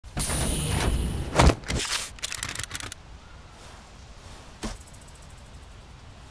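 A rush of noise that ends in a single very loud bang, followed by a quick run of sharp, rapid cracks lasting about a second and a half. A lone short knock comes near the end.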